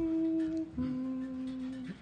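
A singer humming the starting pitches for an a cappella group: two held notes one after the other, the second lower than the first.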